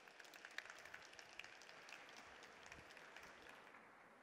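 Faint audience applause: a dense patter of many hands clapping that thins out near the end.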